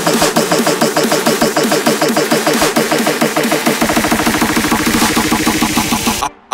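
Hardcore electronic dance track, instrumental: a rapid repeating riff of short, gliding synth notes. About four seconds in, a fast low pulse joins it and builds toward the drop.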